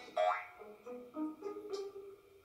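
Light comedic background music with a quick rising boing-like sound effect near the start, followed by a few short notes stepping up and down in pitch.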